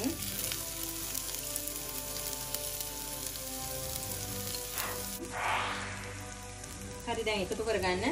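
Chopped onions sizzling in hot oil in a clay pot, stirred with a wooden spoon, with a louder swell of sizzling about five and a half seconds in.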